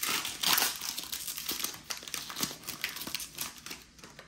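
Foil wrapper of a Pokémon TCG booster pack crinkling as it is torn open and handled, loudest in the first second and thinning out towards the end.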